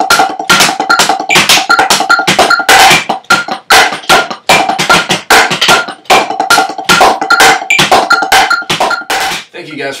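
Drumsticks playing fast inverted paradiddle nines (a right-left-left-right-left-right-right-left inverted paradiddle with a bass drum stroke tacked on) around a kit of rubber practice pads: a dense, rapid run of sharp strokes with a ringing pad tone, stopping just before the end.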